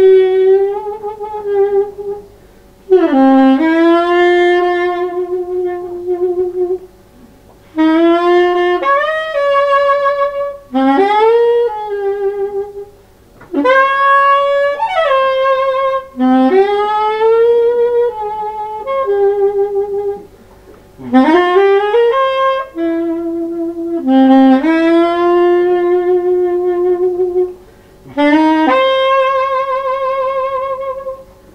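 Solo saxophone playing free-improvised jazz: a string of short phrases of a few seconds each, broken by brief pauses, with many notes sliding up in pitch as they begin.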